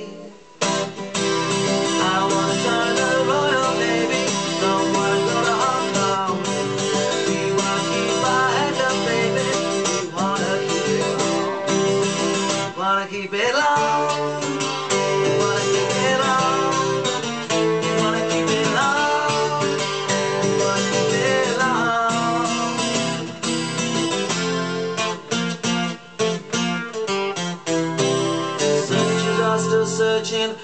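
An acoustic guitar is strummed steadily while a man sings along. The music breaks off for a moment at the very start, then carries on.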